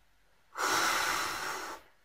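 One loud breath close to the microphone, a hissing rush lasting just over a second.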